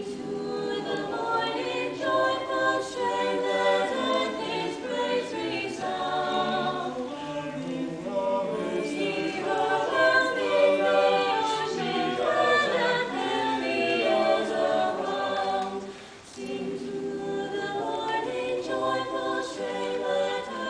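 Small mixed-voice choir of about seven singers singing a Renaissance anthem a cappella in parts, with a brief break between phrases about sixteen seconds in. The intonation is still not quite settled, by the choir's own account of a first performance that 'still needs some tuning'.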